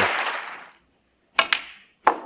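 Audience applause dying away, then two sharp clicks close together about a second and a half in.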